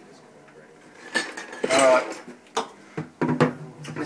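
Several sharp clinks and knocks of bottles being handled and set down on a table. A man makes a short wordless vocal sound about two seconds in, louder than the clinks.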